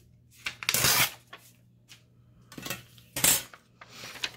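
Paper being torn against the edge of a scalloped-edge ruler, in two rasping rips, one about a second in and one near three seconds in.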